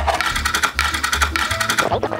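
Background music with a steady beat and bass line, over quick knife chopping of parsley on a wooden cutting board.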